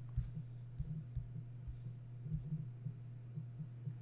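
Steady low electrical hum, with a few soft thumps and brief scratchy rubbing noises in the first couple of seconds.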